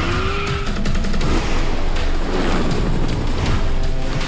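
Trailer music over a motorcycle's tyre squealing on wet pavement in the first second, followed by a dense mix of action sound effects.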